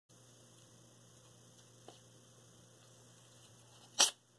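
Near silence: a low, steady electrical hum with faint background hiss, and one faint click about two seconds in.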